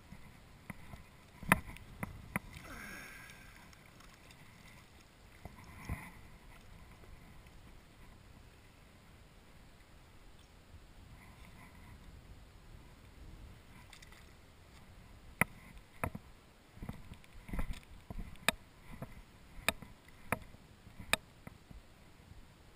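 Water splashing and sloshing at the lake's edge as a small fish is landed and handled by hand, with scattered sharp clicks and knocks of handling, a few near the start and a run of them in the last several seconds.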